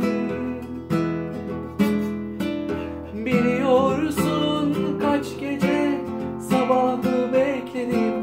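Nylon-string classical guitar strummed and picked in chords, with a new chord struck every second or so, accompanying a slow pop song.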